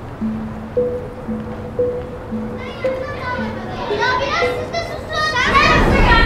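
Soft background music plays a run of slow, evenly spaced held notes. From about halfway, a group of children's voices chatters and calls over it, growing louder near the end.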